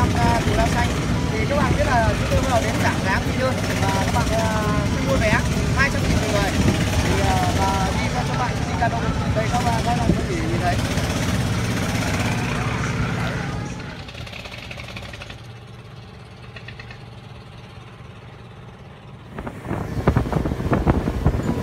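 A man talking over a steady low engine rumble. About two-thirds of the way through the talking stops and the sound drops to a quieter low hum.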